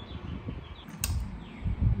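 Handling noise from a phone's microphone held close by hand: low rubbing and bumping, with one sharp click about a second in and a louder low bump near the end.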